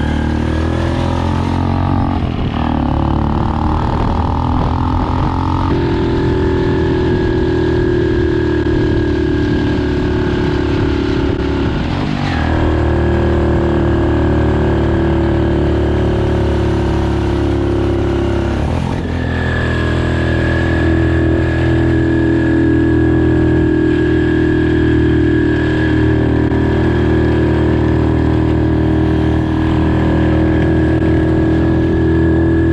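Motorcycle engine of a sidecar tricycle running steadily under way. Its pitch changes in steps a few times.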